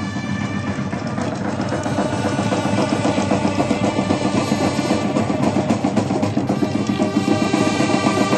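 Drums beating a fast, rolling rhythm with steady held notes sounding over them, growing louder about two seconds in.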